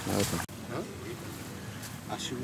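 Indistinct voices of people talking, over a steady background hiss, with an abrupt cut in the audio about half a second in.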